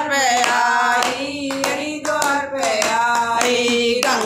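A group of women singing a devotional bhajan together, keeping time with hand clapping.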